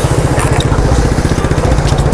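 SYM New Fighter 150 scooter's single-cylinder engine idling with a steady, fast low pulse.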